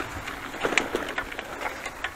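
Bicycle rolling over a bumpy dirt path: steady tyre and ground noise with irregular small clicks and rattles from the bike.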